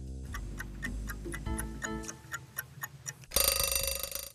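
Countdown timer ticking steadily over soft background music, then a ringing alarm-clock bell near the end as the time runs out.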